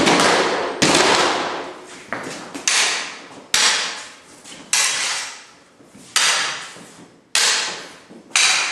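Swords striking each other in stage combat practice, about seven hard clashes spaced roughly a second apart, each ringing and fading out over most of a second.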